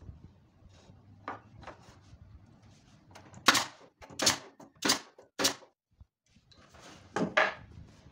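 Pneumatic brad nailer firing brads into plywood, each shot a sharp bang with a short puff of air: four shots about half a second apart, then two more in quick succession near the end.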